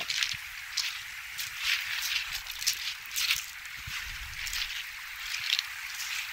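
A shallow river bubbling over stones as it runs across a shingle beach: a steady rushing hiss broken by many quick little splashes and gurgles.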